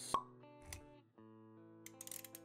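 Intro-animation sound effects over soft music: a sharp pop just after the start, a soft low thud a moment later, under a steady sustained chord.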